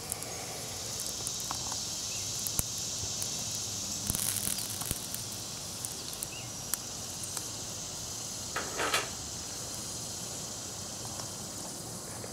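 Small twig fire with wet tinder burning, giving scattered faint crackles and pops over a steady high hiss. A brief pitched sound comes about three quarters of the way through.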